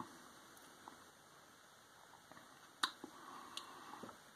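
Mostly quiet room tone, with one sharp clink nearly three seconds in and a few faint ticks around it, as a glass beer bottle is handled against a drinking glass.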